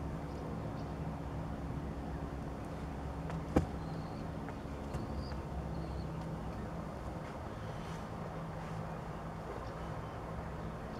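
Steady low hum of a distant motor running, holding a few steady low tones. A single sharp click about three and a half seconds in.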